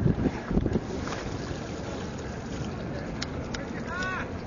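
Wind buffeting the microphone over steady outdoor background noise, with low rumbling surges in the first second and a couple of faint clicks near the end.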